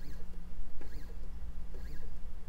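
A laser engraver's stepper motors making three short 5 mm jog moves along the Y axis, about one a second. Each move is a brief whine that rises and falls in pitch as the motors speed up and stop, with a click at each one and a steady low hum underneath.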